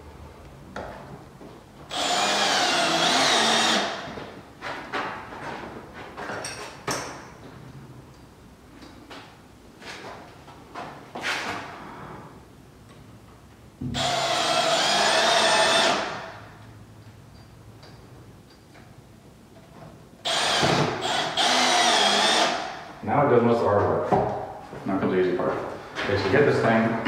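Cordless drill/driver running in three bursts of about two seconds each, driving screws to fix mini-blind mounting brackets. Quieter clicks and handling noises fall between the bursts.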